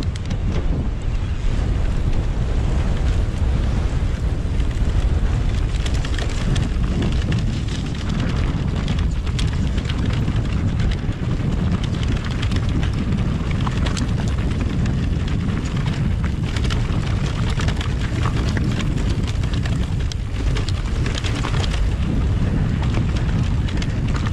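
Wind buffeting the camera microphone over the steady rumble of a full-suspension electric mountain bike rolling down a rough, stony trail. Frequent sharp clicks and knocks come from the bike and stones throughout.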